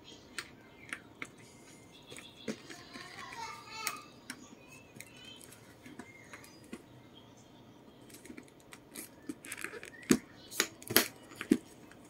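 A leather handbag being handled: scattered soft clicks and taps, then a cluster of sharper clicks and knocks near the end from the flap and its magnetic snap clasp.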